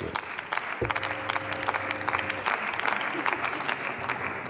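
Applause in a large parliamentary chamber: many members clapping unevenly together. About a second in, a click is followed by a steady low tone, two pitches at once, lasting about a second and a half.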